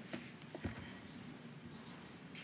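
Faint scratching strokes of a felt-tip marker writing characters on a card, with a few light knocks in the first second.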